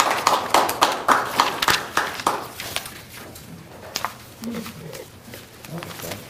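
A small audience applauding, the clapping dying away about two and a half seconds in, leaving faint voices.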